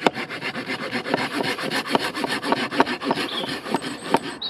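Florabest folding pruning saw cutting through a seasoned elm log, the blade rasping in the kerf with quick, short back-and-forth strokes.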